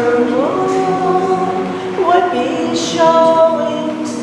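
A woman singing a song unaccompanied, holding long notes and sliding up into the next note twice.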